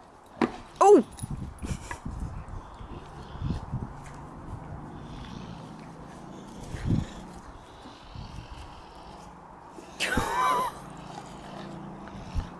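French Bulldog puppy and bullmastiff play-fighting: the puppy gives a short high yelp that falls in pitch about half a second in and a longer, wavering high squeal about ten seconds in, with low grunts and scuffling in between.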